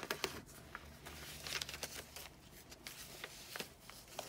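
Paper and card rustling and crinkling in short, scattered bursts with light taps: the pages and tucked-in journaling cards of a handmade junk journal being handled and turned.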